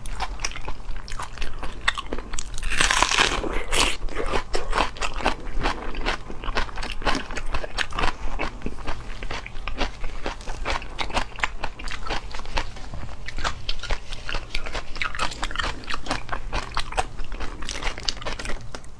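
Close-miked crunchy chewing and biting: a person eating crisp food, a dense run of crackling crunches with a louder stretch of crunching about three seconds in.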